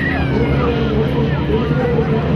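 Engine of an off-road rally 4x4 running at speed across a dirt track, heard from a distance as a steady low rumble.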